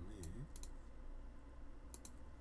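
A few sharp computer mouse clicks, two close together about half a second in and another near the end, over a low steady hum.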